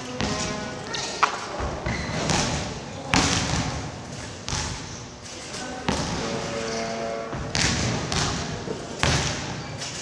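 Trampoline beds being bounced on, a whooshing thump about every one and a half seconds, with a sharp click about a second in.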